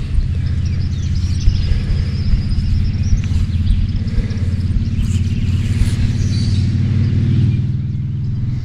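Steady low rumble of wind buffeting a phone's microphone, with faint bird chirps above it in the first half.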